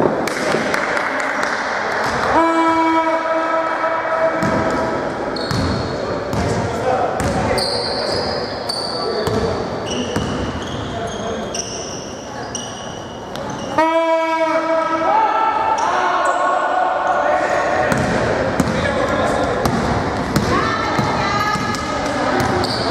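Basketball game sounds in a sports hall: the ball bouncing on a hardwood court and sneakers squeaking. A game buzzer sounds twice, for about two seconds each time, about two seconds in and again at about fourteen seconds.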